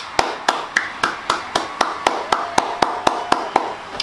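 A single person clapping hands at a steady pace, about four claps a second, stopping just before the end.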